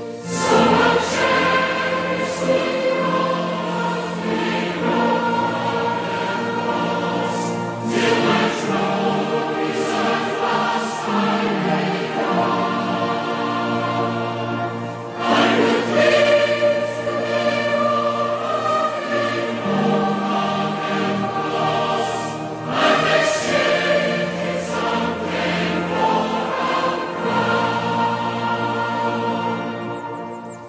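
A choir singing a hymn in long held phrases over a steady low accompaniment.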